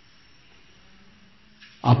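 A pause in a man's recitation: faint steady hiss with a low hum, then his voice starts again near the end.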